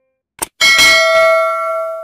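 A short click, then a single bright bell ding that rings on and fades away over about a second and a half: the notification-bell sound effect of a subscribe animation.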